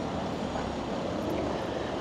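Steady street background noise: a low, even hum of town traffic with no distinct events.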